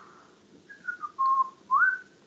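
A person whistling a few notes: a short falling note, a held steady note, then a quick upward slide near the end.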